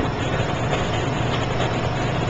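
Steady background hum and hiss of an old lecture recording, without change.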